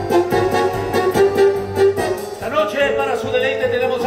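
Stage-musical dance-number music with a steady beat; a wavering melody line comes in about halfway through.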